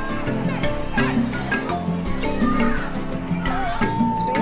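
Opening theme music with percussion hits and sustained notes, with wavering voices mixed into it.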